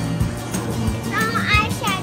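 Background music with a steady beat and low bass notes, with a young child's high voice calling out about halfway through.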